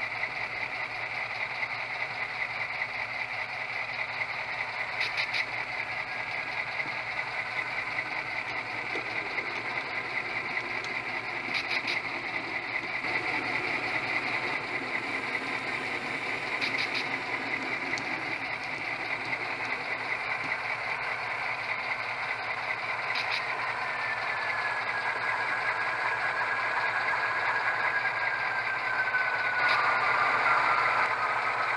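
Sound-system audio of an HO-scale EMD SW9 diesel switcher model idling, loud and steady, with a short burst of clicks roughly every six seconds. In the last few seconds a falling whine joins in.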